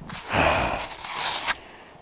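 A heavy, effortful breath out from a person straining to get up out of deep snow, followed by a short sharp click about a second and a half in.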